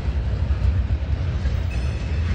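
Freight train tank cars rolling past, a steady low rumble of steel wheels on rail. Near the end a faint high wheel squeak begins.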